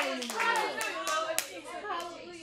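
Church congregation clapping and calling out: a few scattered sharp hand claps over several overlapping voices.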